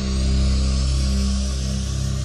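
Slow instrumental music with long held notes over a steady bass.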